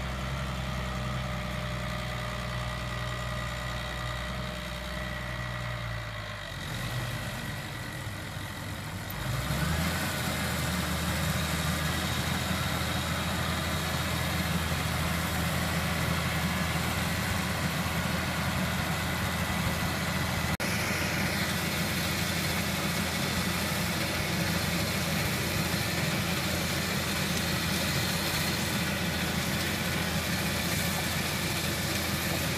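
Tractor engine idling steadily, then about nine seconds in it revs up and keeps running louder and steadier at working speed as it drives a compost spreader, whose rear beaters throw compost out behind it.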